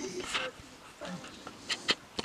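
A black-and-white cat grooming itself: faint licking, with a few quick clicks near the end.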